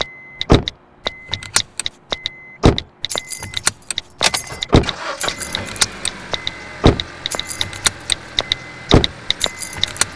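Edited soundtrack of car sounds: a deep thump about every two seconds, with clicks and rattles in between and a short high beep repeating throughout.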